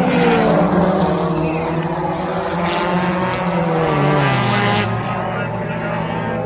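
Stock car engines at racing speed as the cars pass on an oval track, the engine note falling in pitch as they go by, most clearly about four seconds in.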